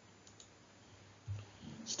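A pause in a man's narration, near silence with a faint click about a third of a second in. A brief low vocal sound comes around the middle, and speech resumes near the end.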